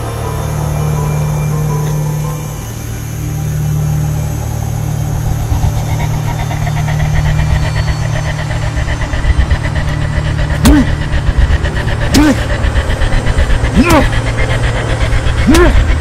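A car engine idling, with a steady low hum and a fast flutter. In the second half, a short, sharp call repeats about every one and a half seconds over it.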